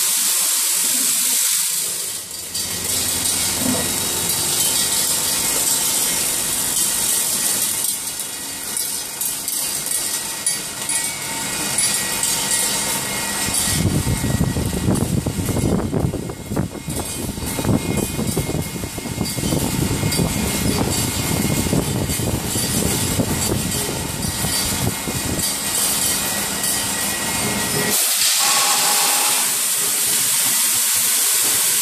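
Hardware weighing and packing machine running: a steady hiss with a continual rattle of small parts, growing to a heavier clatter about halfway through as screws are weighed, dropped and bagged.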